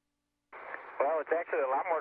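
Speech only: a crew member starts answering over a narrow-band space-to-ground radio link about half a second in, after a brief silence with a faint steady hum.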